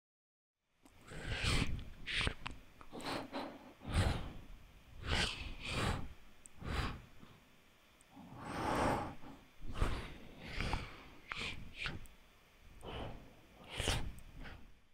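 Unprocessed microphone take of a person making breathy, whooshing mouth sounds in about a dozen short swells. It is the raw vocal performance that drives a cloth-movement Foley plugin, heard here without the processing.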